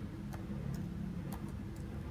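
Computer keyboard keys pressed one at a time: four separate clicks about half a second apart, over a steady low hum.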